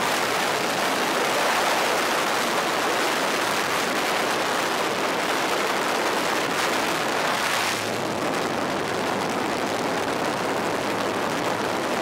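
Loud, steady wind noise through the open door of a small jump aircraft in flight, mixed with the plane's engine; a low engine hum comes through more clearly in the second half.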